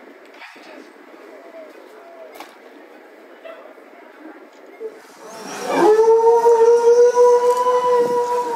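Low crowd and stage murmur, then about five and a half seconds in a singer starts one long note into a microphone, scooping up into pitch and then holding it loud and steady.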